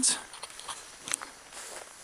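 Footsteps through tall dry grass: a faint, steady rustle of stems against legs, with a few light crackles, one sharper about a second in.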